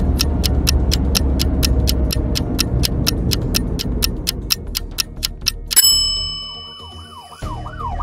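A ticking countdown-timer sound effect, about four ticks a second over background music, ends about six seconds in with a bell ding. A cartoon police-car siren then starts, its pitch rising and falling quickly.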